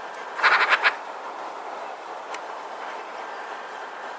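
Eurasian magpie giving a short harsh chattering rattle of about five rapid notes, about half a second in, over steady background noise.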